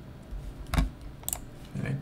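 Computer keyboard keys pressed a few times, with two sharp clicks about half a second apart.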